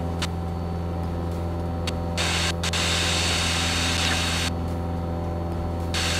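Cessna 177 Cardinal's piston engine and propeller droning steadily in the cabin during a descent. A burst of hiss rises over the drone from about two seconds in and drops away at about four and a half.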